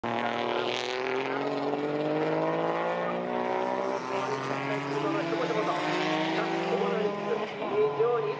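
Suzuki Cappuccino time-attack car's engine revving hard under acceleration, its pitch climbing steadily, dropping at an upshift about halfway, then climbing again.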